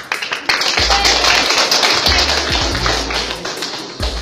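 Many hands clapping, a dense crackle that starts about half a second in and fades near the end, over music with a deep bass beat.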